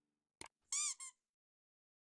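Subscribe-button animation sound effect: a single mouse click about half a second in, then a short chirp that rises and falls in pitch, with a brief second chirp right after it.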